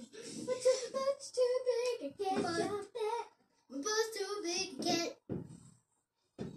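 A young girl singing in short phrases with brief pauses, holding some notes steady.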